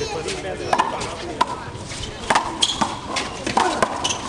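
Big rubber handball being slapped by open hands and hitting the concrete court walls during a rally: a series of sharp, irregular smacks.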